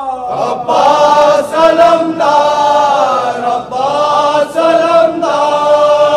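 Male voices chanting a devotional manqabat in long, held phrases whose notes bend and glide in pitch, with a choir-like vocal backing.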